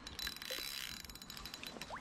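Abu Garcia Superior spinning reel ticking rapidly as line is worked against a hooked, pulling tench on an ultralight rod.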